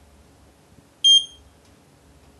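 iCharger 206B LiPo charger giving a short, high electronic beep about a second in, its signal that the balance charge has started.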